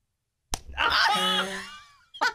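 A single hard open-hand slap to a man's face about half a second in, followed at once by a loud yell that fades over about a second and a half.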